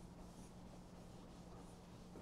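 Faint chalk scratching on a blackboard in a few short strokes, over a steady low hum.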